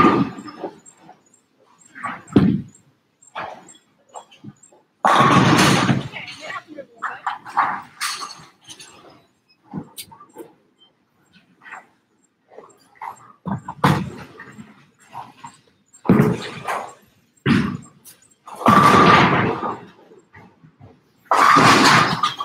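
Bowling balls striking pins at the end of the lane: several loud crashes about a second long, one near the start, one about five seconds in, and more near the end, with smaller clatters and indistinct voices between.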